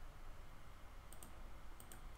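Faint computer mouse clicks, a couple about a second in and a couple more near the end, over a low background hiss.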